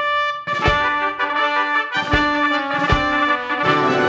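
Instrumental Broadway-style pit-orchestra backing track with no vocal line, brass (trumpets and trombones) carrying sustained chords over sharp percussive accents about once a second.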